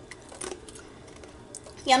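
Faint, scattered clicks and crackles of ice being handled in thin plastic, with a girl's voice starting near the end.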